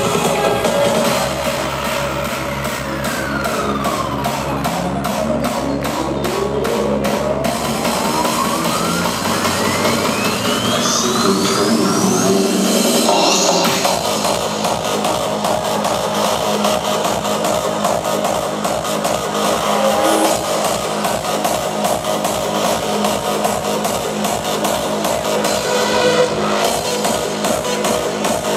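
Hardstyle electronic dance music played live by a DJ over a large sound system. A build-up carries a long rising synth sweep over about eight seconds, and at about fourteen seconds the drop comes in as a steady kick-drum beat.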